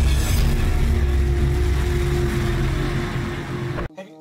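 An intro sound effect: a sudden hit followed by a heavy, loud low rumble with a steady hum in it, cutting off abruptly near the end.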